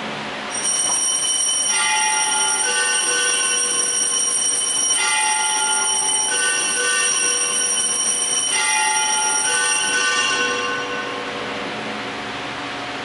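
Altar bells ringing at the elevation of the chalice: a cluster of high, sustained metallic tones, rung again several times and dying away near the end.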